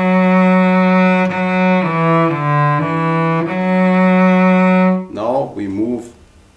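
Solo cello bowing slowly in first position: a long held note, a few lower notes in the middle, then the long note again. A man's voice starts speaking near the end.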